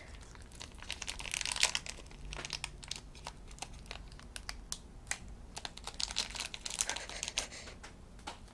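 Small plastic wrapper crinkling and crackling as fingers pick and tear it open, with many small clicks and ticks.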